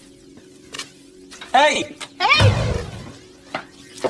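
A recorded song starting to play: a voice singing over music, coming in about one and a half seconds in, with a heavy low hit partway through.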